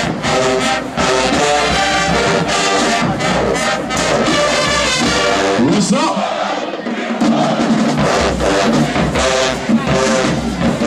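Marching band playing a brass-heavy tune on the field, horns and drums together. The low end drops out for about a second around six seconds in, then the full band comes back in.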